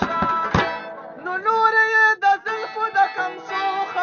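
A plucked string instrument playing a solo melodic phrase with no drum under it, with a sharp plucked accent shortly after the start.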